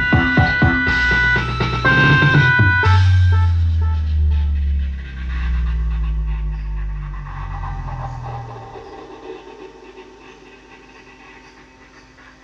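Music played through a home-built power amplifier on an MCRD V3 driver board: a beat with drum hits, then long deep bass notes that fade away over several seconds as the volume knob is turned down, leaving a faint steady hum.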